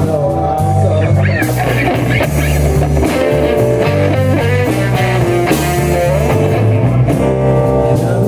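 Live blues band playing: an electric guitar with bending notes to the fore over bass guitar and a drum kit.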